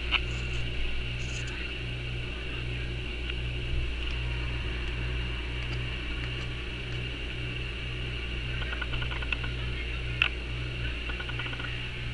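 A steady low mechanical hum, with a few faint clicks and two short patches of rapid ticking late on.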